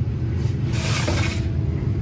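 A steady low background hum, with a brief soft rustle about a second in.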